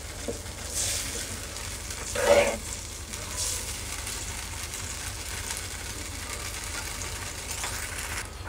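Gravy sizzling and bubbling in an aluminium kadhai over high heat while a slotted steel spoon stirs it: the cornflour slurry is thickening the sauce. One brief louder sound comes about two seconds in.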